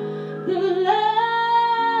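A woman singing into a microphone, amplified through a speaker. About half a second in she slides up to a high note and holds it steadily.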